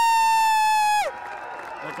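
A man's long, high "woo!" whoop, held on one pitch and sagging slightly before it breaks off about a second in.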